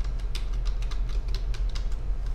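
Typing on a computer keyboard while entering a username and password: a quick, irregular run of key clicks, about six a second, over a steady low hum.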